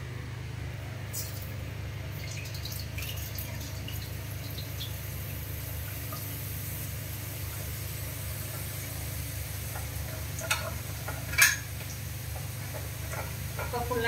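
Batter dripping through a perforated ladle into hot oil in a kadai and frying as boondi, with a steady sizzle. Two sharp metallic taps come about ten and eleven seconds in.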